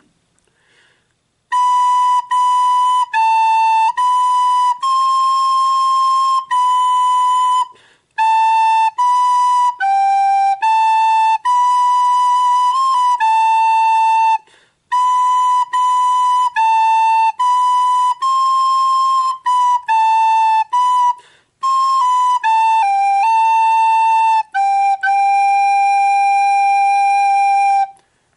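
Soprano recorder playing a slow hymn melody alone, one clear note at a time, stepping among a few neighbouring notes. The tune falls into phrases with three short breaks for breath and ends on a long held note.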